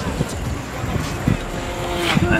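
Small motorcycle engines running, with wind rumbling on the microphone.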